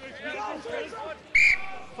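A referee's whistle: one short, sharp blast about a second and a half in, as play stops after a ruck. Voices run underneath.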